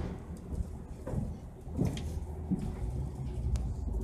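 Low road and engine rumble of a moving vehicle heard from inside its cabin, with a faint steady hum and a few short squeaks or rattles.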